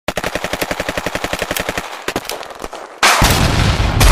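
Automatic gunfire sound effect: a fast burst of about fifteen shots a second for nearly two seconds, then a few scattered shots, then a loud blast with a deep rumble about three seconds in.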